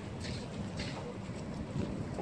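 A pile of burning tyres close by: a steady low rumble of flames, with a few short crackles.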